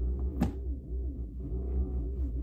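Massage chair's massage motors running with a low hum and a repeating rise and fall in pitch about twice a second. A single sharp click comes about half a second in.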